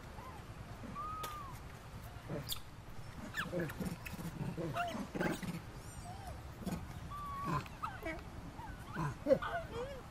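Macaques calling: a scattered series of short calls that arch and glide in pitch, with the loudest a little after nine seconds.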